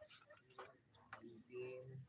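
Faint, steady high-pitched chirring of night insects, crickets.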